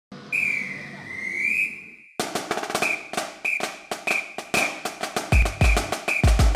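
A whistle sounds for about two seconds, its pitch dipping and rising, then breaks off into a drum beat with short whistle chirps on the beat. Deep bass drum hits come in near the end.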